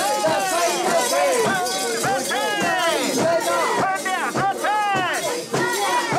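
A group of mikoshi bearers chanting and shouting in rhythm as they carry the portable shrine, many voices overlapping in repeated rising-and-falling calls.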